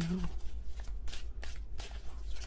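A deck of reading cards being shuffled by hand: a run of short, quick card slaps and riffles, about three a second.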